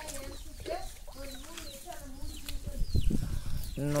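Hens clucking, with short high falling chirps of small birds over a low background rumble.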